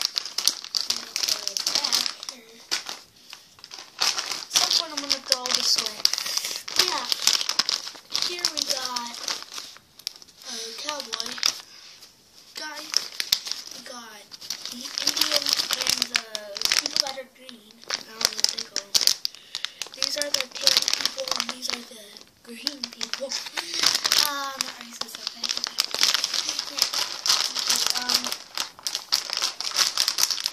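The crinkly packaging of a 25-piece pack of toy army soldiers being torn open and handled by hand, in repeated bursts of crackling crinkles. A child's voice makes sounds without clear words in between.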